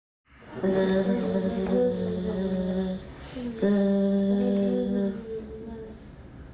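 A small choir humming held notes together, imitating a buzzing bumblebee. The hum starts about half a second in and breaks off near three seconds, then a second long hum follows and thins out near the end.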